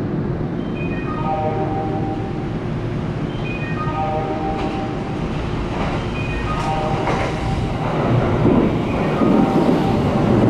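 Kintetsu 80000 series Hinotori limited express running through the station, its rumble growing loud over the last two seconds as the cars sweep past. Under it a short electronic chime phrase on the platform repeats about every two and a half seconds.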